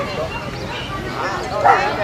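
A dog gives a couple of short, sharp barks, the loudest near the end, over people talking.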